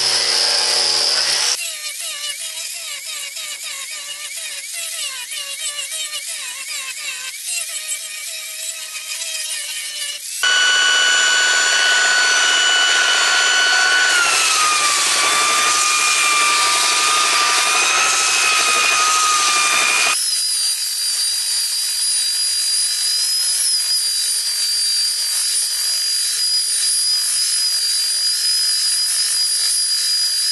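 Power tools working the face of a black locust log slice flat. An angle grinder with an aggressive abrasive wheel runs at the start, then a handheld electric sander runs in several cut-together stretches of steady motor whine. Part-way through, the sander's pitch drops as it is pressed into the wood.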